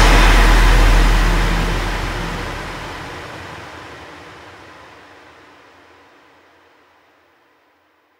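Closing bars of a dark drum & bass track: the drums drop out, leaving a sustained noisy synth drone over deep sub-bass. The bass fades first, and the noise trails off to silence about seven seconds in.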